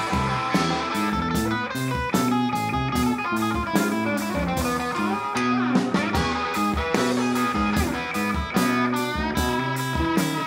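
Live band playing an instrumental break without vocals: electric guitar to the fore over a steady drum-kit beat.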